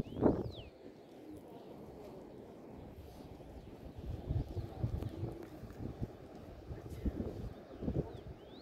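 Faint voices of people talking some way off over a low rumble of outdoor air and microphone handling, with a short high chirp about a third of a second in.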